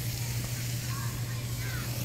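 A steady low hum under an even outdoor background hiss, with a few faint short chirps in the middle.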